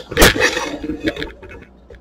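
Brief handling noise as the camera is moved: a short rustling burst, then a few light clicks and knocks that die away within about a second. No pump is running.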